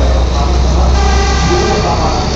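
Diesel passenger train running past at close range, with a heavy, steady low engine drone and the rumble of the carriages. Passengers' voices are mixed in, and a high steady tone joins about a second in.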